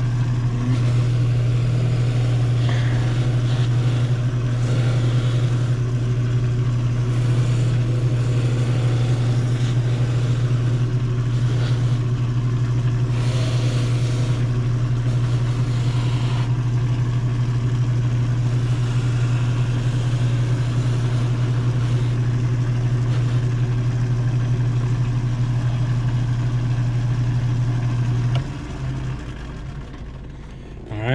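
A cobbler's finishing machine running steadily with a strong low hum while a boot's sole edges are buffed to a shine. The motor is switched off near the end and the hum drops away.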